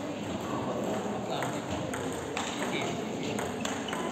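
Table tennis ball ticking sharply off the bats and the table during a rally, the hits coming at an uneven pace, over a background murmur of voices.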